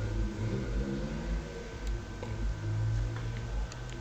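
Low, steady background hum with a faint constant high whine over it; a few faint clicks come near the end.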